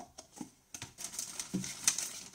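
A few light clicks and taps as a stack of paper cups is handled and set down, then a plastic mailer bag rustling as a hand reaches into it, the rustle loudest near the end.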